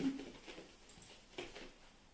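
A short hummed 'mm-hmm' from a girl, then quiet room tone with a couple of faint soft thuds of bare feet on a wooden floor, about half a second and a second and a half in.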